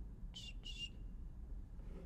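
Two short, high chirps in quick succession about half a second in, over a faint low hum.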